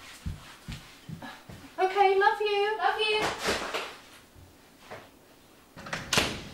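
A few light knocks and household clatter, like cupboards being handled, then a voice for about a second and some rustling; near the end a sharp click as a door is opened.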